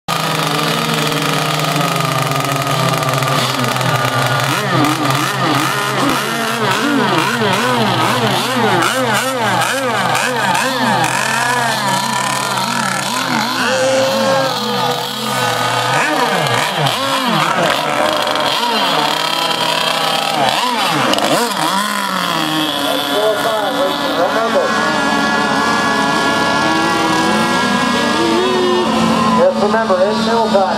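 Several gas-engined RC race boats running, their engines revved over and over so the pitch keeps rising and falling, as they are launched and race across the water. Later the engines hold a steadier high pitch.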